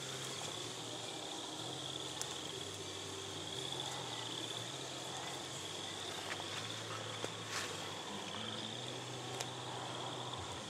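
Crickets trilling in a steady chorus, with a few faint clicks and a low hum underneath.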